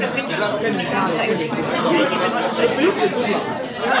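Many people talking at once: the general chatter of a dinner crowd in a large room, with no single voice standing out.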